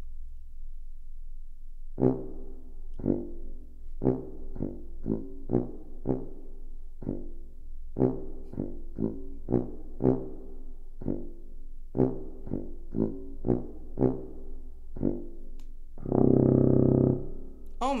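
Tuba playing short, detached oompah notes, about two a second, ending on one long, louder held note near the end; a very low sound.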